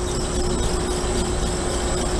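A 4-ton Goodman split-system condensing unit running steadily during refrigerant charging: a constant low hum with a steady mid-pitched tone over an even rush of air.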